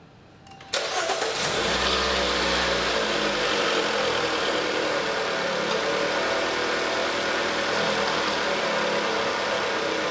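A Chrysler 200's engine starting about a second in, then settling into a steady idle.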